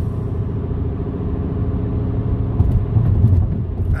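Car driving at highway speed, heard from inside the cabin: a steady low road and engine rumble that swells briefly about three seconds in.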